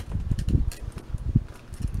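Handling noise as a leather boot stuffed with a foam pool noodle is lifted and moved about: irregular low thumps with a few light knocks and rustles.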